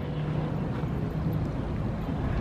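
Steady low rumble of distant vehicle noise, with a faint engine hum.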